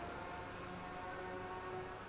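Faint room tone: a low, steady hum with a few thin steady tones in it.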